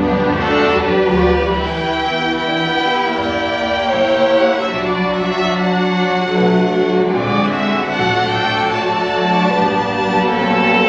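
A high school string orchestra of violins and cellos playing, bowing sustained notes that move to new chords every second or so at a steady volume.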